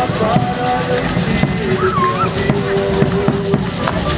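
A dance troupe's rattles and stamping feet making a steady clattering rhythm on stone paving, with a few held melody notes and crowd voices mixed in.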